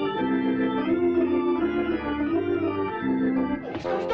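Organ music playing slow, sustained chords that change every second or so. Just before the end it gives way to different, busier music.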